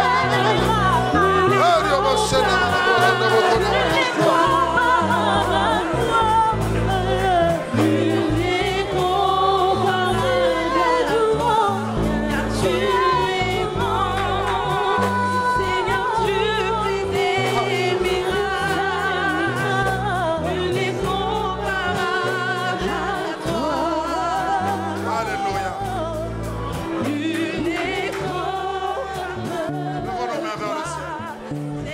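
Gospel worship music: voices singing with a wavering vibrato over sustained low keyboard chords.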